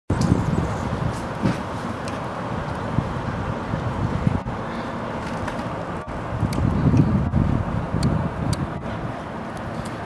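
Outdoor city background noise: a steady low rumble of distant traffic mixed with wind on the microphone, broken by a few brief dropouts.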